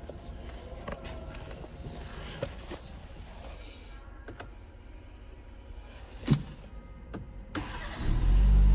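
Rustling and light clicks inside a car cabin, with a single loud thump about six seconds in. Just before the end, the BMW X3 sDrive30i's 2.0-litre turbocharged four-cylinder engine is being started.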